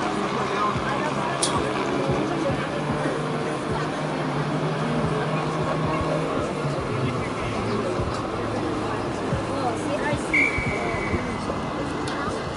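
Spectator chatter and general crowd noise around the pitch. About two-thirds of the way in, a referee's whistle gives one long, steady blast, signalling the second-half kickoff.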